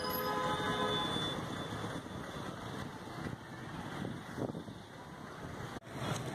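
Street ambience: a steady wash of distant traffic noise, with a faint held tone in the first second and a brief dropout near the end.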